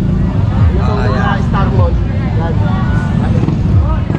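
Busy street-market background: people's voices in the background over a steady low rumble of street noise.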